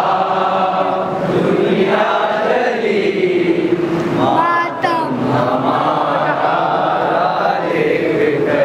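Men reciting a nauha, a Shia mourning lament, in a slow melodic chant into a microphone, with lines held and bent.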